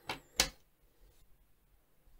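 Two quick clicks as a stainless steel watch and its link bracelet are set down on a wooden table, the second click louder.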